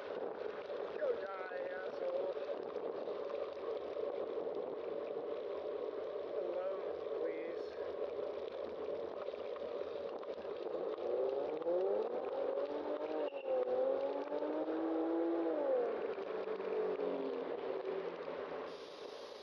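Wind and road noise from a moving bicycle on a city street, with passing car traffic; about two-thirds of the way in, a car's engine rises in pitch as it accelerates, holds, then drops away.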